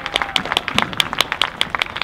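Audience applauding, with loud, sharp individual claps close by standing out from the general clapping.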